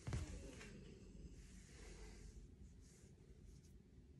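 Near silence in a small room: one soft, low thump right at the start, then faint breathy hisses every second or so as a person seated on a wooden floor shifts into a cross-body arm stretch.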